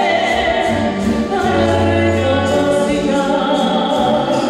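A woman singing a slow ballad into a microphone over amplified instrumental accompaniment, with long held notes, a bass line and a light beat about twice a second.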